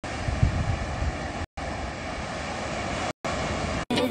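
Ocean surf breaking on a beach, with wind rumbling on the phone's microphone; the sound drops out for an instant a few times.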